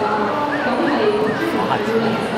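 Many voices chattering in a large hall, with a dog barking among them.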